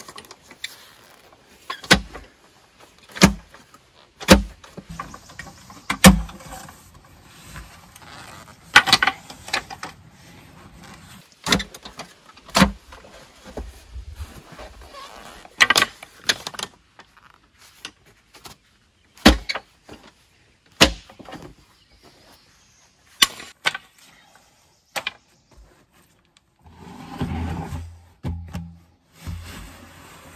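A long-handled digging tool striking and scraping into gravelly soil while a pier hole is dug out, with sharp strikes every one to three seconds and gritty scraping between them.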